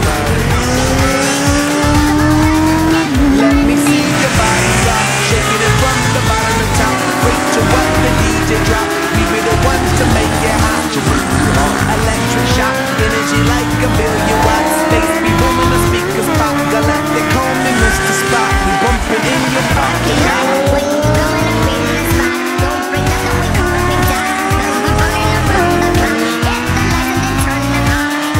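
Several motorcycle engines running hard, their pitch climbing and then dropping back again and again as the riders accelerate and shift up through the gears, with music playing underneath.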